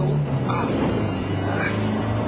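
Moskvich Aleko's 1.5-litre four-cylinder engine pulling hard under full throttle while accelerating. Its steady note breaks up near the start and settles again about one and a half seconds in.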